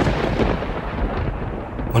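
A low rumbling noise, loudest at the start and fading gradually.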